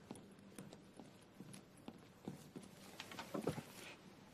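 Footsteps of hard soles on a hard platform floor, about two a second, with a louder cluster of knocks about three seconds in, over a faint steady hum.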